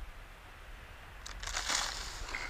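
A faint low hum, then in the last second a brief crunching rustle: the small FPV glider coming down into tall dry grass.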